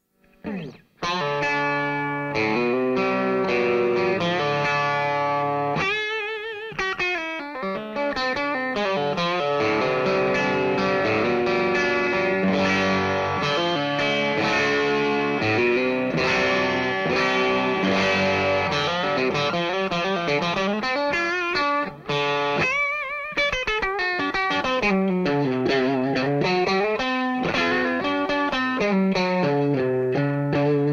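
Electric guitar played on its DiMarzio True Velvet single-coil bridge pickup through a Vox AC15 valve amp turned up a little, giving a mix of clean tone and light overdrive grind. Chords and single-note lines start about a second in, with vibrato and pitch bends along the way.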